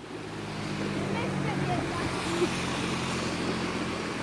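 A shallow river rushing over stones, growing louder over the first second and then steady, with a low steady hum underneath.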